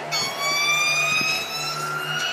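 A long siren-like tone: one held note, slowly shifting in pitch, that starts abruptly just as the rhythmic music before it stops.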